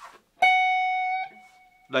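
Stratocaster-style electric guitar playing one high picked note with a little reverb added. The note starts about half a second in, rings for under a second and fades into a faint tail.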